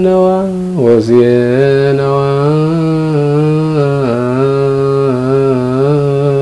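A man singing an Ethiopian Orthodox wereb hymn in Ge'ez, solo and unaccompanied. He draws out long held notes with slow ornamented turns, pausing briefly for breath about a second in.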